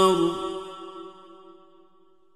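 A male Quran reciter's voice in melodic tajweed recitation holds a long note at the end of a verse. The note stops shortly after the start and dies away in a reverberant echo to near silence.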